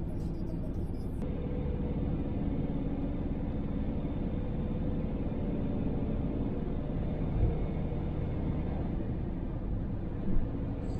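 Camper van driving at a steady speed, heard from inside the cab: a constant low rumble of engine and tyre noise, with a brief low thump about seven and a half seconds in.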